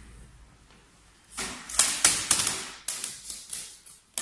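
Plastic stretch-wrap film being handled and pulled by hand, making a quick run of crackling snaps that starts about a second and a half in.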